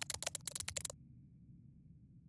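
A quick run of about a dozen sharp typing clicks as text is typed out, stopping about a second in, over a faint low drone that fades.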